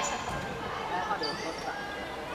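Volleyball players' voices calling out across a large sports hall during a rally, with ball contacts and short shoe squeaks on the court floor.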